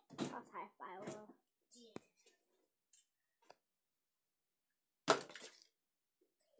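A brief indistinct child's voice, then a sharp click about two seconds in and a loud, short clatter near the end.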